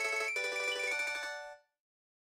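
MuseScore 3's built-in software piano plays back the closing bars of a piano score. It strikes a chord about a third of a second in and holds it, then the sound dies away and cuts off about a second and a half in as playback reaches the end.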